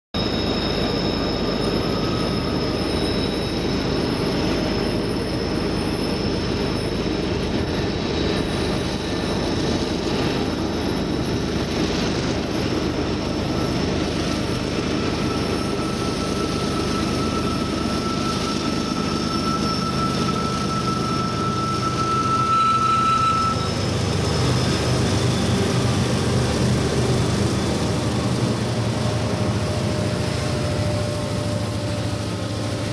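A Union Pacific freight train with a multi-unit diesel lash-up led by an ES44AC approaches and passes, a steady rumble with a thin, high wheel squeal that fades out about two-thirds of the way through. The diesel engines grow louder over the last several seconds as the locomotives go by.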